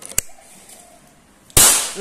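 A sharp click, then about a second and a half in a single loud, sharp shot from a Bocap PCP air rifle, the fifth shot of a group fired into one hole.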